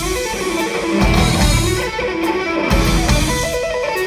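A live instrumental rock trio playing a fast progressive-rock arrangement, with an electric guitar carrying the melody over bass guitar and drums.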